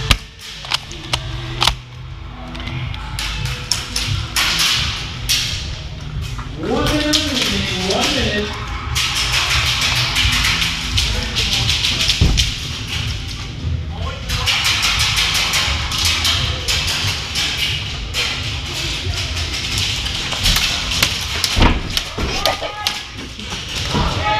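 Airsoft guns firing in quick runs of sharp shots, with music playing underneath and a short shout about seven seconds in.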